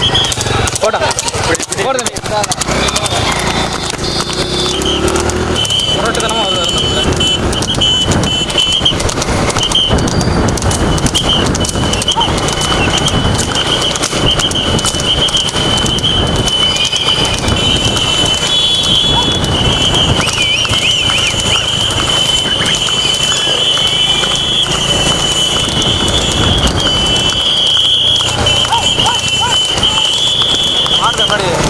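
Loud mixed noise of a horse-cart race: a pack of motorcycles running right behind a trotting horse, with voices and the horse's hoofbeats in the mix, and a steady high-pitched whine running through most of it.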